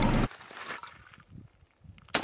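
Faint scuffing and handling sounds as a shooter steps forward and shoulders an AK-pattern rifle. A louder stretch of noise cuts off abruptly about a quarter second in.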